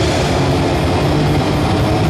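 Heavy metal band playing live at full volume: dense distorted guitars and drums, with cymbals ticking steadily several times a second.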